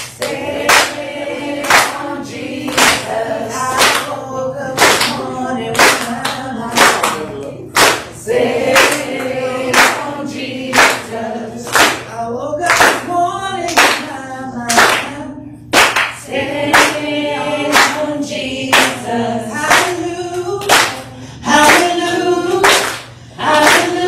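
Congregation singing a gospel song together, clapping their hands in time about once a second.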